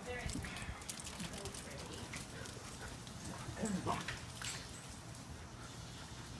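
Two dogs playing on wet concrete: light, scattered clicks and taps of claws and paws scrabbling about, with no barking.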